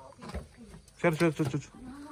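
Mostly speech: a voice calling "come" about a second in, with only faint low sounds before it.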